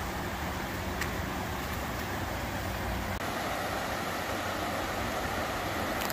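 Steady rushing of a shallow river running over rocky rapids, an even noise with no let-up.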